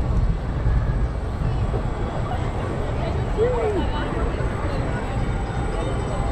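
Gerstlauer family roller coaster train rolling along its steel track, a steady low rumble.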